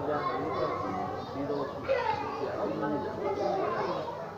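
Children's voices chattering, several at once, with no clear words.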